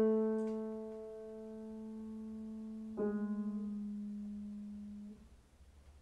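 Solo piano playing slow, sustained single notes: a low note carried over from just before rings and fades, a second, slightly lower note is struck about three seconds in and rings until it is cut off about two seconds later, leaving near quiet.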